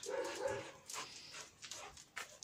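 A dog gives a short whine of steady pitch in the first half second.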